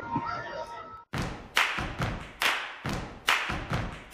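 A brief laugh, then outro music on acoustic guitar starts with sharp, muted percussive strums, about two a second.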